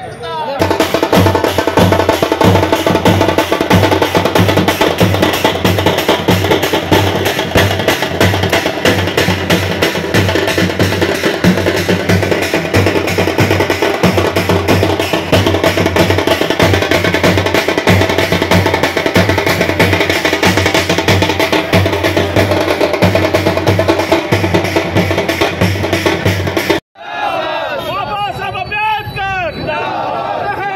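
Loud, fast drumming: percussion-heavy music with a rapid, steady beat. It cuts off suddenly near the end, and voices follow.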